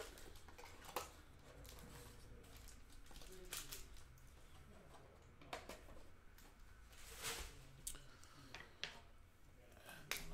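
Faint handling sounds of trading-card packs and a cardboard hobby box: foil packs being lifted out and shuffled, with a few soft clicks and rustles scattered through, the most noticeable about seven seconds in.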